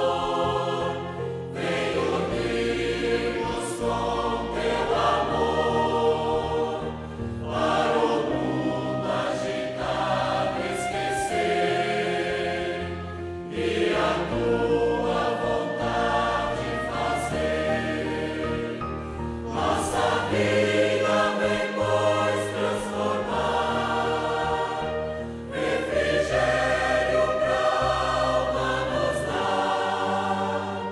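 Recorded choir singing a slow sacred piece with instrumental accompaniment, in phrases about six seconds long.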